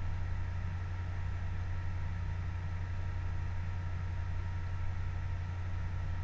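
Room tone: a steady low hum with faint hiss and a few thin, steady higher tones, unchanging throughout.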